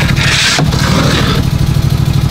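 A steel shovel scraping and scooping through wet quick-set concrete in a compact tractor's loader bucket for about a second and a half. Under it, the Power-Trac PT-425's engine idles steadily.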